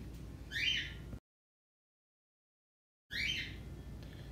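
Mostly quiet room tone broken by about two seconds of dead digital silence, where the recording was cut. Just before the gap and just after it comes a brief high, chirp-like sound.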